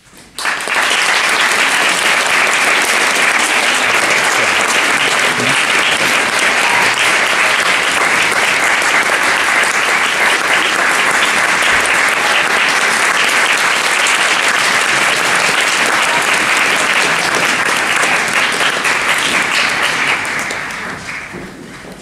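Audience applauding: it breaks out suddenly about half a second in, holds steady and full, then dies away near the end.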